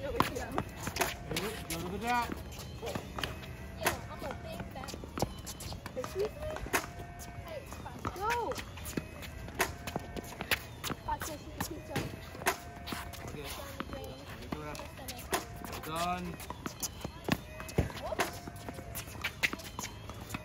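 Tennis balls struck by rackets and bouncing on a hard court, making many sharp, irregular knocks, with running footsteps on the court. Children's and a coach's voices come in now and then.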